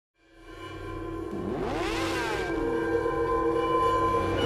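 Logo-intro music fading in with sustained synth tones, and a sweeping sound effect that rises and falls in pitch about a second and a half in.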